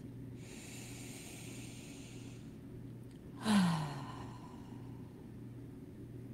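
A woman's deep breath: a slow, faint inhale lasting about two seconds, then about three and a half seconds in, a louder exhale let out as a voiced sigh falling in pitch.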